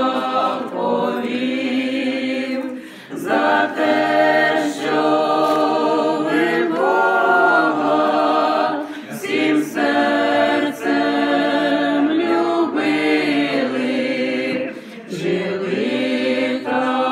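A small mixed group of amateur voices, mostly women with one man, singing unaccompanied together in long held phrases, with brief breaks between phrases.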